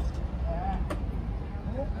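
Café terrace ambience: brief snatches of voices over a steady low rumble, with a sharp click just under a second in.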